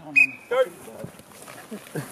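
A short, single blast on a coach's whistle near the start, signalling the start of the drill, followed at once by a shouted "Go".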